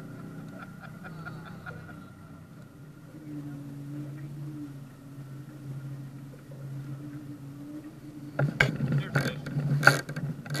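Boat's outboard motor running steadily with a low hum. About eight and a half seconds in, a quick series of loud knocks and rattles.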